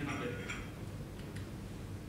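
A few faint, sharp clicks of laptop keys over a steady low hum in the room.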